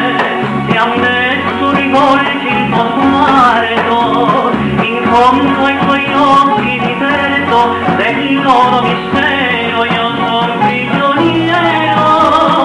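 A song playing: a voice singing over guitar accompaniment and a steady bass line.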